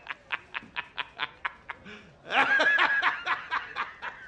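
A man laughing hard in short, rapid 'ha's, about four a second, breaking into a louder, fuller laugh a little past halfway and then back to the quick 'ha's.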